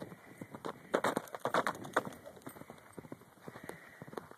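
Clydesdale's hoofbeats galloping over dry pasture ground, loudest about a second or two in as the horse passes close, then fading as it runs away.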